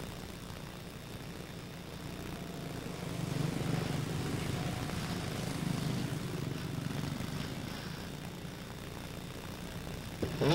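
Quarter midget race cars with single-cylinder Honda 160 engines buzzing as they circle the track. The sound grows louder about three seconds in and eases off again after about eight seconds.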